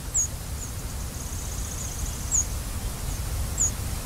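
Background nature soundscape: a bird giving short, high, falling chirps about a second apart, with one brief high trill a little after a second in, over a steady low rumble.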